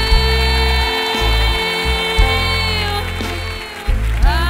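A woman singing one long held note over a live band, with bass pulsing beneath; the note fades out about three seconds in.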